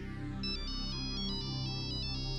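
Mobile phone ringtone: a quick, high-pitched electronic melody of short stepping notes, starting about half a second in, over sustained background music.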